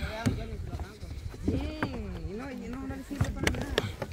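Several people talking quietly and indistinctly, over a low steady rumble, with a few short clicks or knocks.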